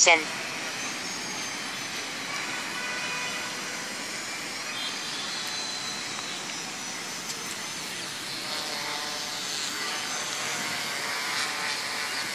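Small quadcopter's electric motors and propellers humming overhead, a steady hiss with faint whining tones that waver slightly as the motor speeds shift.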